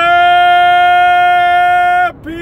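A man singing one long, loud held note, scooping up into the pitch at the start and holding it steady until he breaks off at the end.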